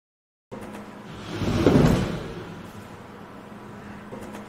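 Steady hum of a robotics lab with a single rushing swell of movement that builds about a second in, peaks and fades, as the swinging box and the two robot arms move.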